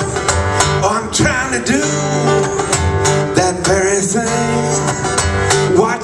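Two acoustic guitars playing together in a live folk-rock song, with low bass notes held under a wavering melodic line.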